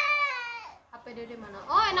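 A toddler crying: one long high-pitched wail that slowly falls in pitch and breaks off just under a second in.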